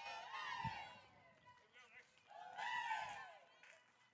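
Faint, distant high-pitched voices calling out twice: softball players' chatter from the field or dugout between pitches.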